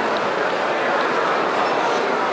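Steady background babble of a crowd in a busy hall, many voices blended into a constant din with no single speaker standing out.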